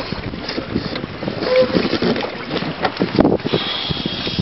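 Seawater sloshing and splashing irregularly against a waterproof camera held at the surface, with wind on the microphone. About three seconds in the camera dips under and the sound changes, with a thin steady whine.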